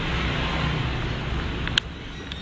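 Steady outdoor background: a low, uneven rumble with hiss, like distant city traffic or wind on the microphone. A sharp click comes near the end, after which the background drops a little.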